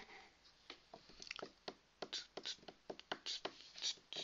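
A sharp mouse click right at the start, then a run of light, irregular clicks and ticks, several a second.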